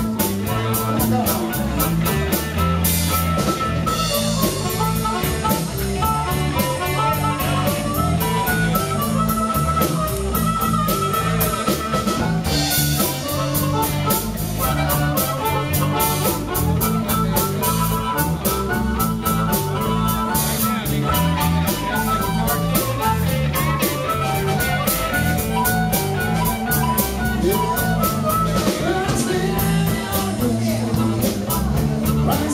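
Live electric blues band: an amplified harmonica, cupped around a microphone, plays the lead over electric guitar, bass and a drum kit keeping a steady beat.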